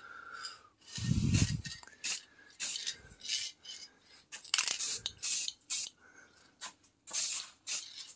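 Krylon Rust Tough gloss enamel aerosol can spraying in a series of short hissing bursts as a brake caliper is coated. There is a brief low rumble a little after a second in.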